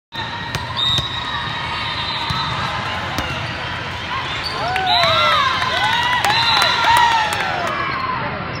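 Volleyball play on an indoor sport court: sneakers squeak in quick, repeated rising-and-falling chirps on the floor, thickest in the second half, with a few sharp slaps of the ball. Spectators chatter throughout, echoing in a large hall.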